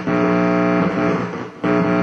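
Guitar chords strummed and left ringing, a second chord struck about a second and a half in.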